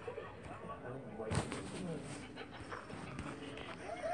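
People's voices from a home-video clip, with one sharp thump about a second and a half in.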